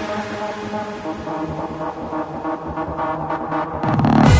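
Classic trance music in a breakdown: held synth chords with no kick drum, and a build of quickening hits over the last couple of seconds. The full beat and deep bass come back in right at the end.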